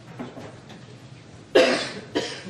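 A person coughing once, a short loud cough about one and a half seconds in.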